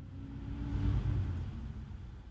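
A road vehicle passing: a low engine rumble swells, peaks about a second in, then fades.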